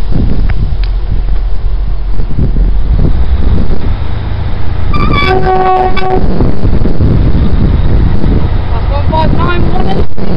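A Class 159 diesel multiple unit approaching with a steady low rumble. About five seconds in it sounds its two-tone horn: a short high note dropping to a lower one held for about a second. A shorter, wavering tone follows near the end.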